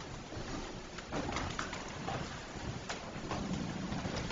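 Faint sounds of people moving about in a small room: soft shuffling with a few light clicks and knocks.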